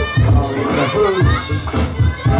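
Hip-hop battle music with a steady beat of about two thumps a second, with a crowd of children shouting and cheering over it.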